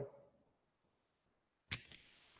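Near silence in a pause between spoken instructions, broken by one short, sharp sound near the end.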